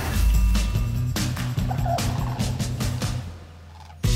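Studio logo sting: a deep boom, then a run of quick clicks over a low hum that fades out about three seconds in.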